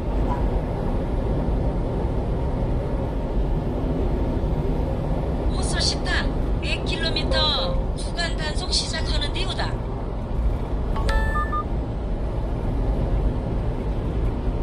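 Steady road and engine noise inside the cab of a 1-ton refrigerated box truck cruising on a highway. A short electronic beep sounds about eleven seconds in.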